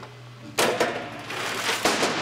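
Metal chain rattling and clattering over a pulley wheel as a chain-reaction mechanism is tried, with several sharp clicks in it. The latch it should release does not trip.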